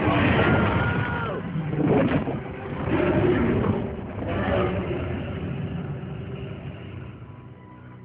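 Film sound effect of a Tyrannosaurus rex roaring: loud, rough roars that come in several swells in the first half, then fade away toward the end.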